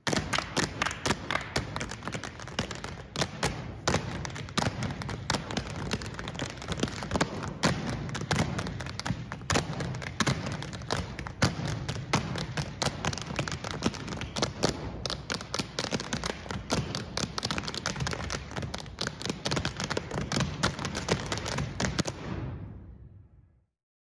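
Dancers' shoes tapping and stamping on a wooden stage floor in a rapid, continuous run of taps and thuds.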